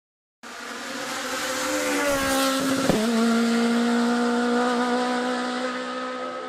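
Rally car engine at high revs, starting abruptly, its pitch climbing slightly, then a sharp crack about three seconds in and a steady lower note that slowly fades.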